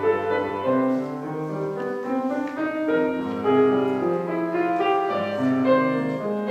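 Grand piano playing the accompaniment of a choral song, a melody of steady, evenly paced notes.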